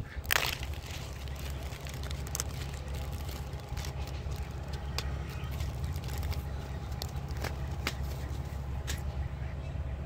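A paper seed packet torn open with a sharp rustle just after the start, then faint crinkles and small clicks as the packet is handled, over a steady low rumble of wind on the microphone.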